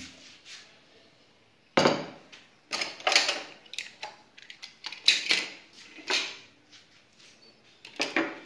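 ThinkPad laptops being set down and shifted on a wooden desk: a loud knock about two seconds in, then a run of clunks, clatters and short scrapes.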